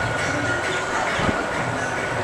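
Background music playing, steady and dense.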